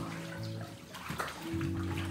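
Water splashing and sloshing in a baptistry tank as people move through it, over background music of held chords that change about one and a half seconds in.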